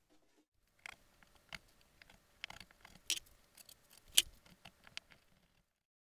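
Scattered light clicks and taps of hand work at a fabric-wrapped wall panel, the sharpest about four seconds in, cutting off to silence near the end.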